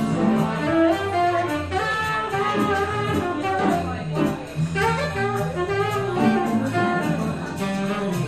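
Live jazz: a saxophone plays an improvised-style melodic line over electric keyboard accompaniment with a walking low bass part.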